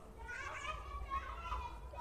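Faint voices over a steady low hum.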